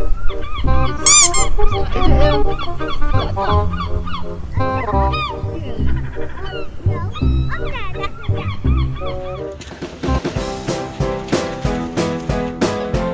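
Background music with repeated honking bird calls laid over it. A steady drum beat comes in near the end.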